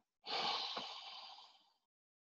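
A person's loud breath out, starting abruptly and fading away over about a second and a half.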